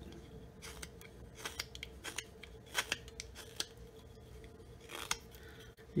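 Flexcut detail knife slicing small chips from a soft basswood block by hand: a string of short, crisp, irregularly spaced cutting snicks.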